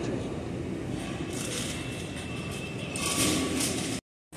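Shopping cart wheels rumbling over a store floor amid steady grocery-store background noise, with two brief hiss-like swells, about a second in and near the end.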